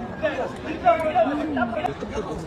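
Speech only: people chatting in Korean.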